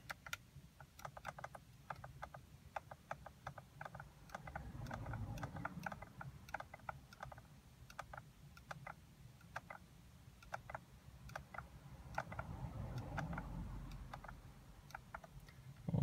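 Steering-wheel control buttons clicking in quick, irregular presses as the dashboard menu is scrolled, a few clicks a second. A faint low rumble swells and fades twice underneath.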